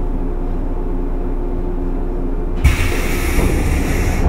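Stationary JR 115 series 1000-subseries electric train humming steadily, then about two and a half seconds in its doors close with a sudden thud and a long hiss of released air from the pneumatic door engines.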